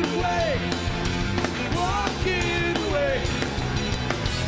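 Live rock band playing at full volume: drums, bass and electric guitars. Over them a lead line of held notes bends up and down in pitch, like a lead electric guitar bending strings.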